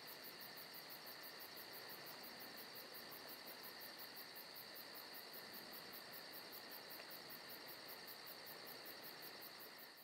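Faint, steady cricket chirring with a rapid, even pulse of about five a second.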